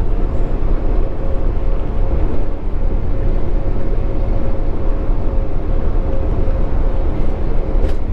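Steady low rumble of a tractor-trailer cruising at highway speed, engine and road noise heard from inside the cab, with a faint steady whine running under it.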